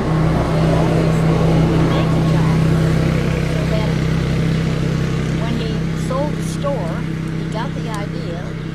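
A steady low motor drone, like an engine running, loudest in the first couple of seconds and slowly easing off. Short bird chirps come in over it in the last few seconds.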